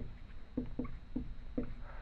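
Dry-erase marker writing on a whiteboard: a quick run of short squeaky strokes, about four or five a second, as a word is written out letter by letter.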